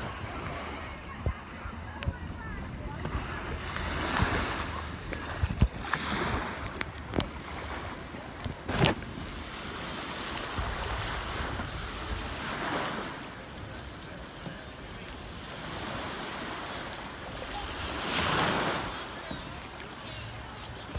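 Small waves washing and lapping onto a sandy shore, swelling and fading every few seconds, with the loudest wash near the end. There is wind on the microphone and a few sharp clicks.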